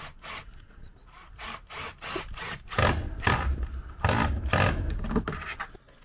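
Cordless drill on a flexible shaft extension driving a screw up into a plywood ceiling board. It comes as a series of short rasping spurts of the screw grinding into the wood, louder and heavier in the second half.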